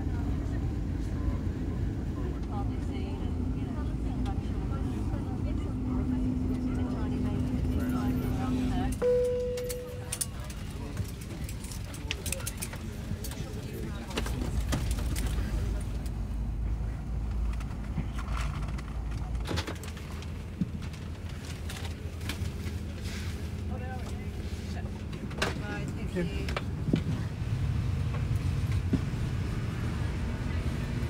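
Airliner cabin at arrival: a steady engine hum and cabin rumble, then a single short cabin chime about nine seconds in. Many clicks and knocks and passengers' voices follow. The low rumble drops away about twenty seconds in.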